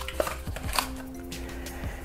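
Soft background music with scattered light taps and rustles of a cardboard box compartment as a charging cable is pulled out of it.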